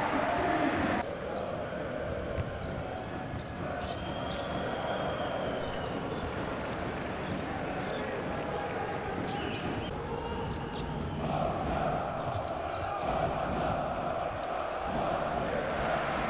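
Basketball ball bouncing on a hardwood court in a series of short, sharp bounces, with brief sneaker squeaks and the steady noise of the arena crowd under it.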